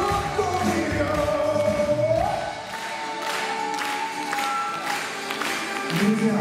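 Live pop band music during a wordless passage of a song, carried by long held melodic notes; the bass drops out about halfway through.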